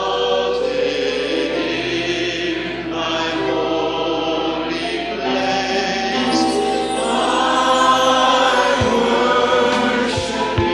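A choir singing a slow worship song in long held chords that change every second or two.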